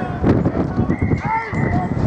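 A referee's whistle blown once, a steady tone held for about a second, from about a second in, over shouting voices and a run of dull irregular knocks.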